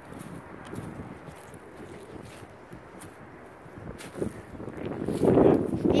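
Wind rushing over a phone's microphone, with faint handling knocks, growing louder in the last second.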